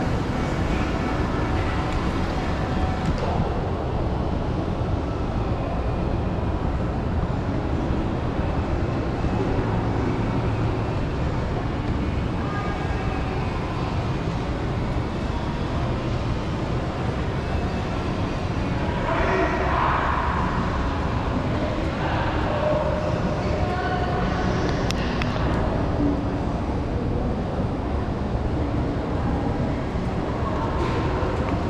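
Steady low rumbling ambience of a large indoor shopping mall, with faint, indistinct voices of shoppers coming up about two-thirds of the way through.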